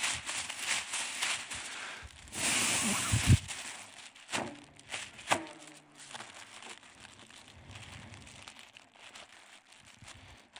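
Thin plastic inflatable tube crinkling in the hands, then one strong breath blown into its open end about two seconds in, a rush of air lasting about a second that, by the Bernoulli principle, pulls in surrounding air and fills the eight-foot tube. The plastic film crackles sharply twice as it fills out, then rustles more quietly.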